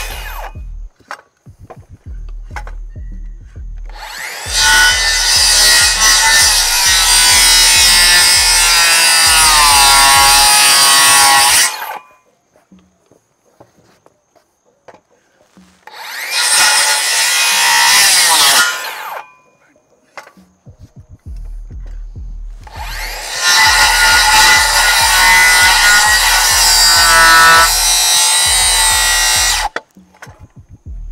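Makita twin-battery cordless rear-handle circular saw cutting through a lumber rafter board in three passes: a long cut from about four seconds in to about twelve, a short one around sixteen to nineteen seconds, and another long one from about twenty-three seconds to near the end. The motor's whine sits steady under the cutting noise and sags in pitch near the end of the first cut.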